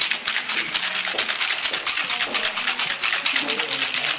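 Ice rattling hard inside a metal cocktail shaker being shaken vigorously, a fast, continuous clatter of ice against steel.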